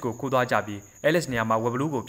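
A man narrating in Burmese: speech only, with a faint steady high whine in the recording under the voice.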